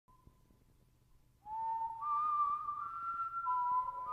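Whistle-like melody opening a song. A faint high tone comes first. From about one and a half seconds in, a few clear sustained notes step upward, overlap and waver slightly.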